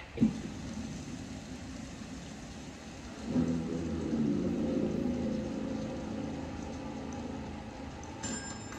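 Low, dark rumbling drone of a film trailer's opening soundtrack, swelling about three seconds in and holding with a few low sustained tones.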